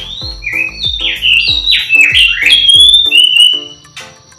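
A songbird sings a rapid run of loud whistled notes that slide up and down in pitch and stop just before the end. Underneath is background music with a steady drumbeat.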